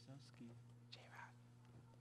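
Near silence: a steady low electrical hum, with a few faint, quiet voices off the microphones in the first second or so.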